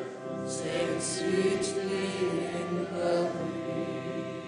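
Church congregation singing a hymn together in sustained notes, with the hiss of sung consonants between about half a second and two seconds in.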